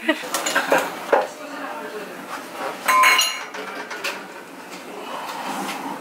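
Clattering and clinking of an aluminium foil tray and the metal oven rack being handled at an open oven: a few sharp clicks at first, then a louder clink with a brief ring about three seconds in.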